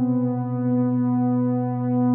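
A sustained electronic drone of several steady held tones, like a synthesizer chord, with the lowest tone loudest. It holds steady and swells slightly near the end.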